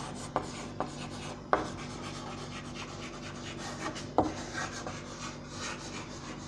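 Chalk scratching across a blackboard as words are written, with a few sharper taps of the chalk against the board.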